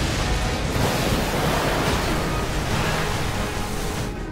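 Explosion sound effect from an anime soundtrack: a long, steady rushing blast of noise with music faintly underneath, easing slightly near the end.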